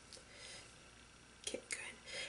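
Mostly quiet, with faint paper rustling and two soft ticks about one and a half seconds in, as fingers handle and press a sticker onto a paper planner page.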